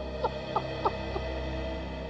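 A man sobbing in short, falling cries, about three a second, which stop a little past the middle. A sustained background music drone plays under the sobs.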